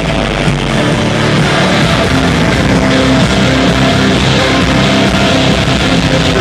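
A rock band playing live and loud with electric guitars, an instrumental passage without singing.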